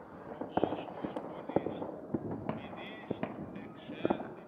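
Distant fireworks, firecrackers and gunshots going off: several sharp, irregular bangs over a steady background murmur.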